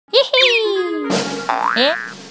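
Cartoon sound effects: a quick springy boing leading into a long falling glide of pitch over about three quarters of a second, then a rushing noise. Near the end comes a character's short, rising 'eh?'.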